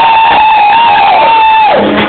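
Loud dance music with one high voice holding a long whoop over it. The whoop rises in, holds steady and drops away near the end.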